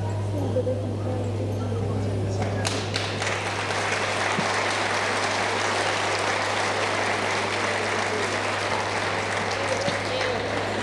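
Audience applauding, starting suddenly about three seconds in and continuing steadily. Before it there are a few voices talking, over a steady low hum.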